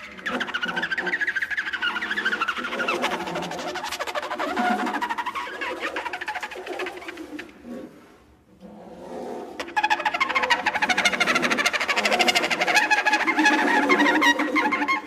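Free-improvised jazz: a horn played with a buzzing, wavering tone whose pitch bends up and down. It fades almost away about eight seconds in and comes back louder near ten seconds.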